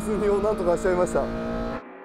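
Honda Civic Mugen RR's K20A four-cylinder, with its reworked intake and exhaust, heard from inside the cabin and running at steady revs, with a voice talking over it. Near the end it cuts off abruptly to a much quieter engine sound.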